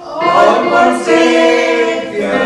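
A family group of women's and girls' voices singing together to a digital piano, holding long notes. A new phrase comes in just after the start, and the notes change about a second in.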